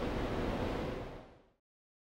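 Steady background hiss of room tone, with no distinct event in it, fading out about a second and a half in to complete silence.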